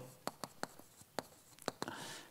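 Chalk writing on a chalkboard: a faint string of about half a dozen short taps and scratches as the chalk strikes and drags across the board.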